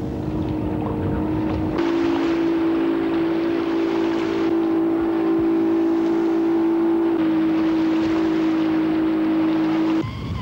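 Outboard motor running steadily as it pushes a drum-and-timber raft ferry across a river, with water rushing underneath. The engine note steps up slightly about two seconds in and drops a little around seven seconds in.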